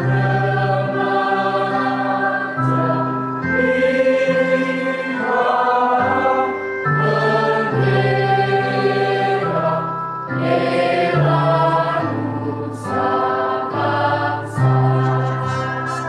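A mixed choir of boys and girls singing held chords that change every second or two.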